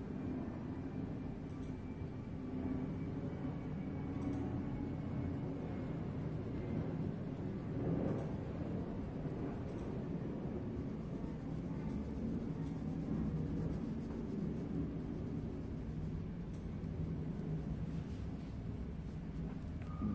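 Coloured pencil rubbing on paper while shading in a drawing, over a steady low background hum.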